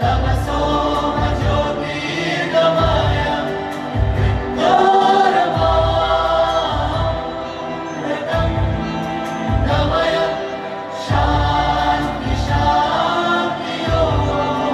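Song with sustained, wordless choral voices gliding in long phrases over deep drum beats that come in short clusters.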